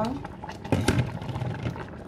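A woman's voice trailing off at the start, then a couple of short, sharp knocks about a second in.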